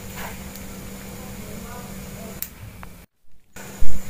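Steady low electrical hum over faint room noise, broken by a short gap of silence about three seconds in, then a single loud low thump near the end.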